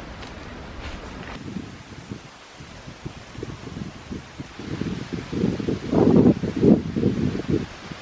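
Wind gusting in a forest and buffeting the microphone, with leaves rustling; the gusts grow louder and choppier in the second half.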